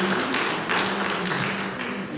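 Audience applause with scattered claps, dying away.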